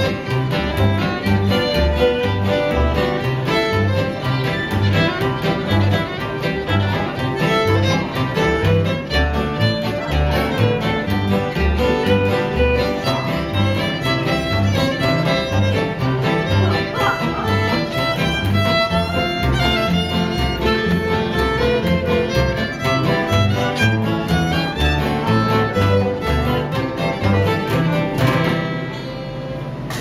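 Old-time string band of fiddle, five-string banjo, acoustic guitar and upright bass playing a fiddle tune live, the bass keeping a steady beat under the fiddle melody. The tune ends near the close with a softer held final chord.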